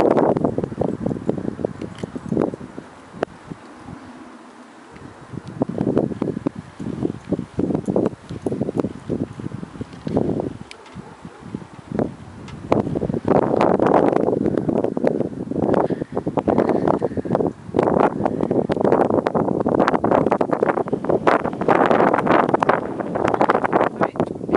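Irregular rustling and wind buffeting on the microphone of a camera held close to a dog nosing through grass. The noise comes in short scuffs at first and turns denser and steadier from about halfway.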